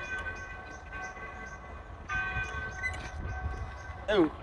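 Wind rumbling on the microphone under several steady high tones sounding together, which come and go twice.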